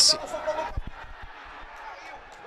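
The narrator's male voice ends at the very start, then the match's own field sound: faint shouts from the pitch and a couple of soft low knocks over a low, steady outdoor background.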